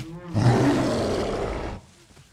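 A gorilla roaring: one loud, rough roar of about a second and a half, starting shortly in and cutting off near the end.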